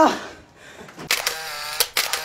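Camera-shutter sound effect marking an edited cut: a hiss starts about a second in, with sharp shutter-like clicks near the end.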